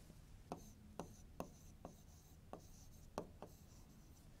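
Faint sound of a pen writing a word on a board: about seven light taps and scratches as the strokes go down.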